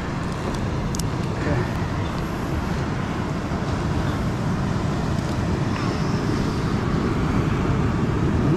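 Steady rushing noise of coastal wind and surf, heaviest in the low range, with a single sharp click about a second in.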